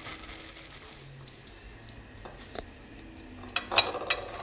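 A few light clinks and knocks of kitchen utensils and cookware around an iron karahi of heating oil, with a louder brief clatter near the end.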